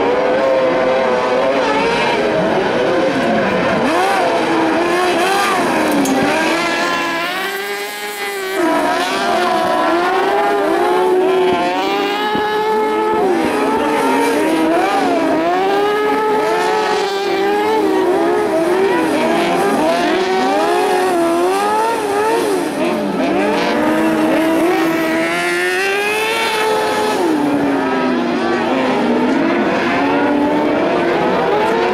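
Several carcross buggies' high-revving motorcycle engines racing on a dirt circuit. Their pitch rises and falls through gear changes and throttle lifts, and the engines overlap, with a brief drop in loudness about eight seconds in.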